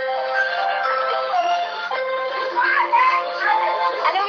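A birthday song playing, with a synthesized-sounding singing voice over held notes and short vocal glides.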